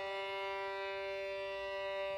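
Violin holding one long, steady bowed tone, almost without vibrato.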